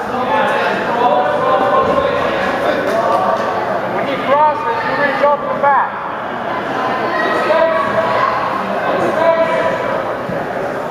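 Overlapping, indistinct voices of spectators and coaches calling out, echoing in a large gymnasium, with a few louder shouts about four to six seconds in.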